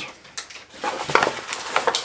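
Paper wrapping and tape being torn and crinkled by hand as a small wrapped package is opened: a few scattered crackles, then a dense run of rips and crackles from about a second in.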